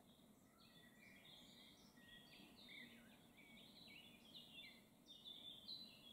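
Very faint birdsong: a quick succession of short, high chirping notes over a faint background hiss.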